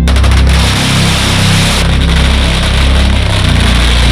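A long string of firecrackers going off, a loud, rapid, unbroken crackle of small bangs. Music with a heavy bass line plays underneath.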